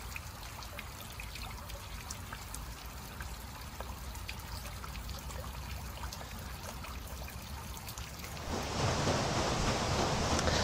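Salt brine trickling and splashing down through the blackthorn brush of a graduation tower into its collecting trough, a steady patter of many small drips. About 8.5 s in, a louder, steady rushing noise takes over.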